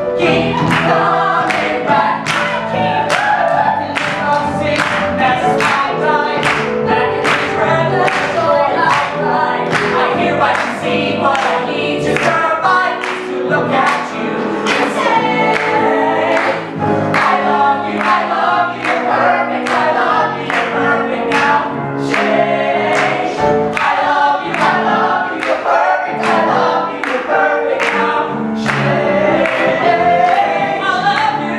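A mixed ensemble of male and female voices sings a musical-theatre number together in harmony, with live piano accompaniment, steadily throughout.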